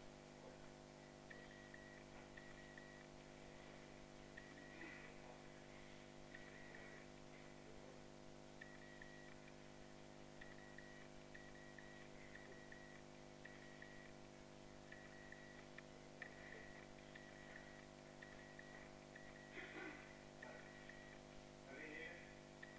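Near silence: room tone with a low, steady hum and a faint high chirping repeated in short runs.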